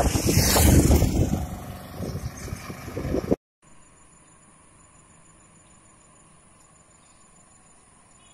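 Strong wind buffeting the microphone outdoors, a gusty rumble for about three and a half seconds. It then cuts off suddenly to a faint steady hiss with a thin high whine.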